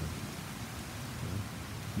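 Steady hiss of a light drizzle falling on pavement and foliage.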